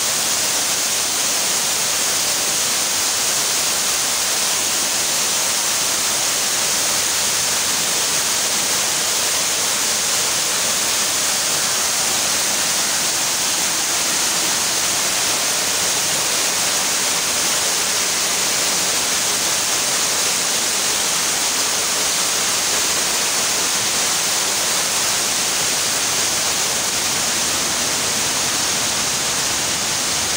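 Man-made waterfall pouring down artificial rockwork into a shallow pool: a steady, even rush of falling water.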